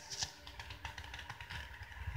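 Handling noise at a webcam or computer: a string of small irregular clicks and knocks over a low rumble.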